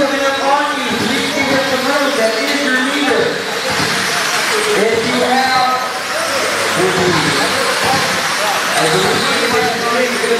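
Indistinct voices talking without pause over a steady background hiss.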